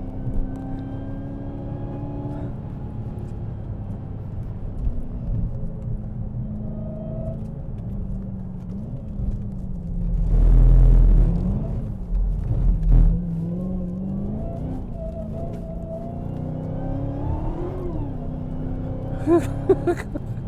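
A Dodge Challenger's supercharged V8, heard from inside the cabin at track speed. The revs climb and drop several times with throttle and gearchanges, and a loud low rumble swells about halfway through.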